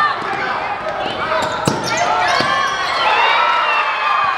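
Basketball game sounds on a hardwood gym court: sneakers squeaking and two sharp ball bounces a little under a second apart, about halfway through, with voices around them.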